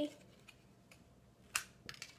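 A few short taps and clicks from a small plastic snack cup and its peeled foil lid being handled on a wooden table, the loudest about one and a half seconds in.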